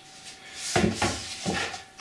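Wooden guitar parts handled and set down on a workbench: a few soft wooden knocks and rubs.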